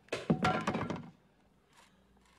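A baseball bat smashing a portable stereo (boombox): a heavy crash of breaking plastic and metal lasting about a second, then it stops.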